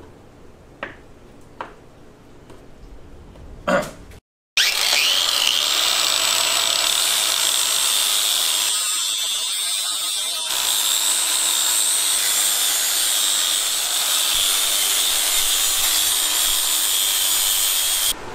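Angle grinder with a flap disc grinding steel, a go-kart axle, running loudly and steadily with a high whine over the grinding hiss. It starts abruptly about four seconds in, after a few faint clicks, and thins briefly about halfway through.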